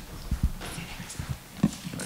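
A few irregular low knocks and thumps, four or so spread over two seconds, with no speech.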